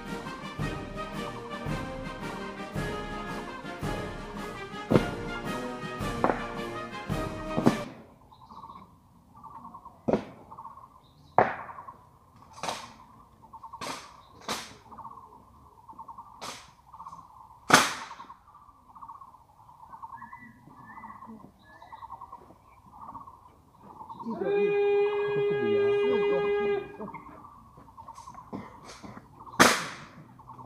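Ceremonial brass music that cuts off about eight seconds in, followed by the sharp, separate clacks and thuds of an honor guard's rifle drill: rifles slapped in the hands and butts knocked on the pavement. About 25 seconds in a single long held tone sounds for two or three seconds.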